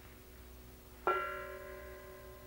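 A bell struck once about a second in, its clear ring of several steady tones fading slowly over a faint low hum.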